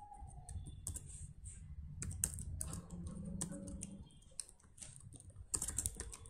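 Computer keyboard typing: irregular single keystrokes, with a quick run of them near the end.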